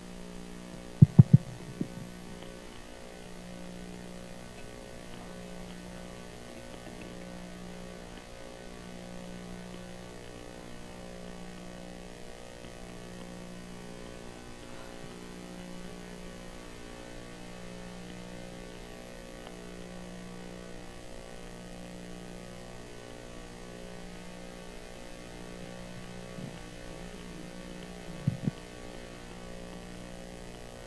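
Steady electrical mains hum in the sound system, with a slow pulsing swell. A few sharp knocks come about a second in and again near the end.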